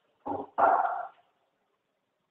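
An animal calling twice in quick succession, a short call followed by a longer one about half a second later.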